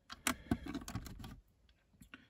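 Plastic LEGO bricks clicking and rattling as they are handled and pressed onto a baseplate: a quick run of small clicks over the first second and a half, then stillness.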